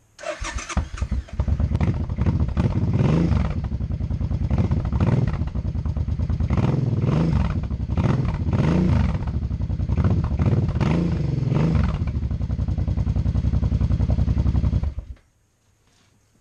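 2009 Suzuki Boulevard C50T's 805 cc V-twin with its exhaust debaffled, cranked on the starter and catching after about a second. It then runs and is blipped several times, the revs rising and falling, before cutting off about a second before the end. The owner calls it a big bike sound.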